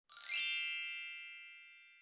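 A bright chime sound effect for a logo intro: a quick rising shimmer into one ringing chord of several high tones, which fades away over about a second and a half.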